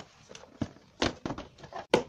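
A few light, irregular clicks and knocks from hands handling parts of a motorbike, the sharpest one just before the end.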